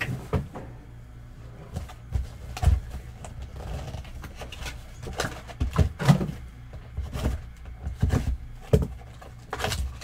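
Cardboard trading-card boxes being opened and handled on a table: irregular taps, knocks and scrapes of cardboard.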